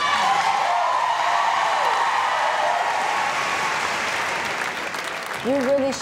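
Large audience applauding, easing off slightly before a woman starts speaking near the end.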